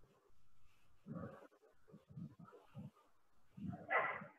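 Faint, muffled voice murmuring indistinctly in short bursts, with a somewhat louder sound near the end.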